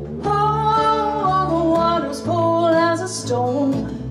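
A woman singing long held notes, accompanied by acoustic guitar and upright bass in a live folk-jazz performance.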